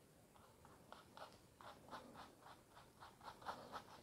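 Faint rapid strokes of a paintbrush working oil paint onto a canvas, a quick run of short brushing sounds starting about a second in.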